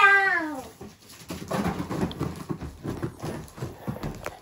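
A young child's high-pitched squeal, falling in pitch, at the start. From about a second and a half in, Christmas wrapping paper rustles and crackles as presents are torn open and a wrapped box is handled.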